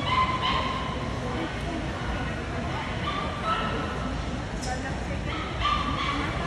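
A basenji giving a few short, high-pitched, held cries, spread through the stretch, over the chatter of a crowd.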